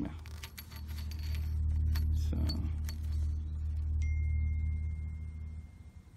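Brass garden-hose fittings clinking and ticking as they are handled, several light metallic clicks in the first couple of seconds over a steady low rumble. A thin steady high tone starts about four seconds in.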